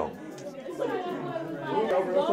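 Several voices chattering at once, their indistinct talk overlapping.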